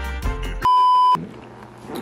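Background music that stops about two-thirds of a second in, cut off by a loud, steady half-second beep at a single high pitch, a censor bleep. Quiet room sound follows.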